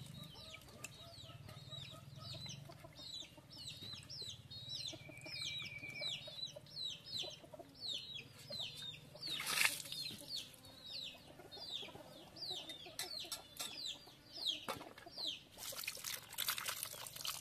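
Chicks peeping: a long run of short, high, falling chirps about twice a second. A brief burst of noise cuts in about halfway through.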